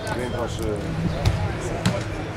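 A football struck twice in play: two sharp thuds a little over half a second apart, the first a little past a second in and the second near the end.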